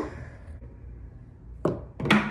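A small toy figure thrown down carpeted stairs, landing with one sharp knock near the end, over a faint low room hum.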